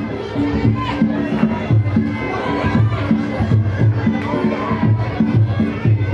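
Loud music with a heavy, repeating bass pattern, over the noise of a crowd.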